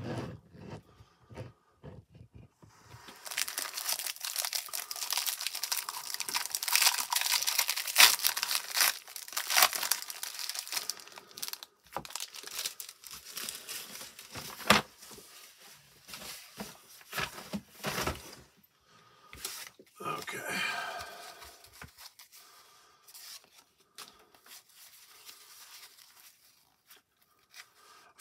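Cellophane wrapper of a 1990 Topps baseball cello pack being torn open and crinkled: a dense crackle for several seconds starting about three seconds in, then scattered crinkles and clicks as the pack and cards are handled.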